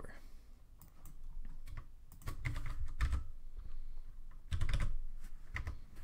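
Computer keyboard keystrokes, scattered clicks coming in short irregular bunches, as code is copied and pasted into an editor.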